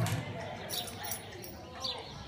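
Indistinct voices in a large covered arena, with a few short sharp knocks about a second in and again near the end.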